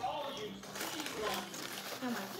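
A person's voice talking, with no other clear sound standing out.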